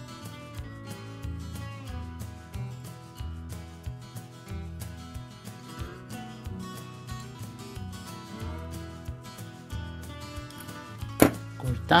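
Instrumental background music with steady held notes. A single sharp click sounds near the end.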